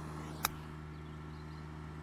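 Golf club striking the ball on a short chip shot: a single sharp click about half a second in, over a steady low hum.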